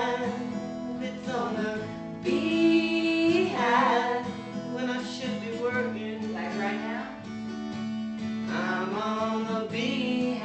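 Two acoustic guitars strummed together, with a man and a woman singing lines of a song over them, a long held note about two seconds in and another phrase near the end.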